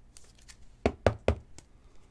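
Three quick knocks close together a little under a second in, with faint plastic clicks around them, as a trading card is handled and slid into a rigid clear plastic toploader.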